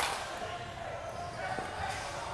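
One sharp knock right at the start, then the background of a large indoor batting facility: faint distant voices and one small tick, echoing in the hall.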